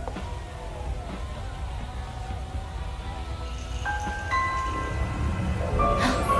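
Eerie background score: a low rumbling drone with faint wavering tones, joined about four seconds in by held chime-like notes that enter one after another and grow louder.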